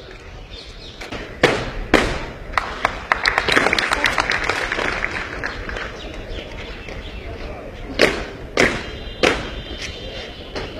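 Soldiers' boots stamping hard on pavement in a parade-ground march: two sharp stamps about a second and a half in, a denser run of quicker clatters in the middle, and three more stamps near the end.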